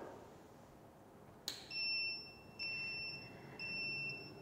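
BIOBASE shaker incubator's electronic controller beeping as it is powered on. There is a click about a second and a half in, then a run of steady high beeps, each just under a second long, back to back.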